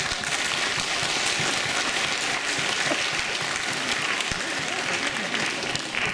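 Audience applauding a choir at the end of a carol, a dense, steady clapping that eases slightly near the end.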